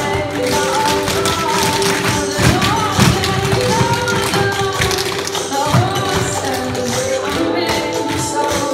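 A group of tap shoes striking a wooden floor in quick, many-footed rhythms over recorded music.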